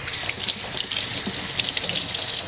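Kitchen sink faucet running steadily, water splashing into the sink as hands are rinsed under it.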